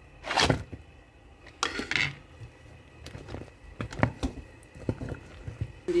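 Pieces of fried beef and fried mackerel going into a pot of soup: a run of separate thunks and knocks, the two loudest about half a second and two seconds in, then several smaller ones.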